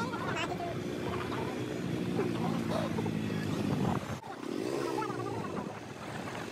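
A two-wheeler's engine runs steadily while riding along a street, with wind on the microphone and faint, indistinct voices. About four seconds in, the sound cuts abruptly to mostly wind noise.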